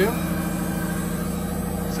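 A steady low mechanical hum made of several constant low tones with a faint fast pulsing underneath, like a motor or engine running at an even speed.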